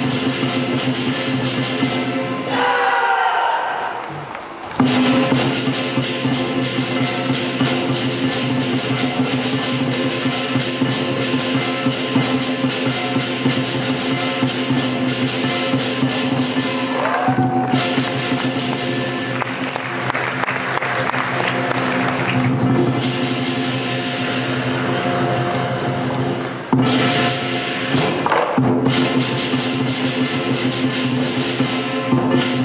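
Chinese lion dance percussion: drum, cymbals and gong playing a fast, dense, continuous beat, which drops away briefly about three seconds in and again near seventeen seconds.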